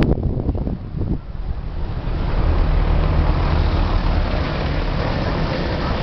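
A motor vehicle's engine running close by: a steady low rumble that sets in about a second in and holds.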